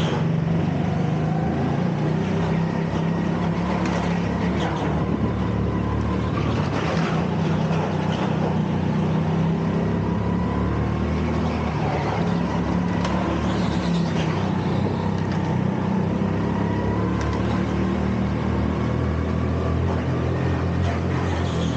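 Go-kart engine heard from onboard, running steadily under throttle with small rises and falls in pitch through the corners, and a few brief sharp knocks as the kart runs over a bumpy track surface.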